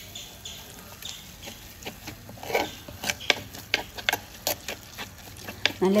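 Metal spoon stirring and scraping thick onion-tomato masala in a frying pan: irregular clicks and scrapes, several a second in the latter half.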